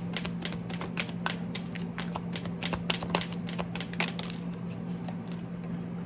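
Tarot cards being handled: a run of light, irregular clicks and taps, over a steady low hum.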